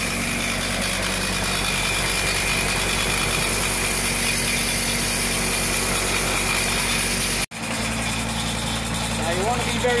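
Jacobsen Super LF 1880 fairway mower running steadily with its cutting reels spun backwards for backlapping while lapping compound is brushed on. No friction or grinding is heard from the first reel: it is not making contact with its bedknife. The sound cuts out for an instant about three-quarters of the way through, then the same running carries on.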